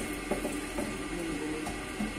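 A utensil stirring vegetables in a stainless steel pot, with a few light clinks and scrapes against the metal.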